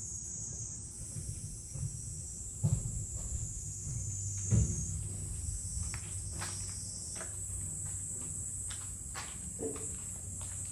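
Insects buzzing in a steady high drone over a low background rumble, with a few dull thumps, the loudest about three and five seconds in.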